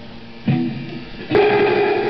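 Guitar struck twice: a short chord about half a second in that fades quickly, then a louder chord near the middle that keeps ringing.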